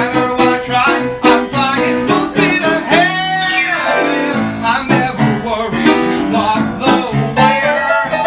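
A man singing a fast musical-theatre song while accompanying himself on a grand piano with quick repeated chords. About three seconds in he holds one long note with vibrato, which slides down and gives way to the piano about a second later.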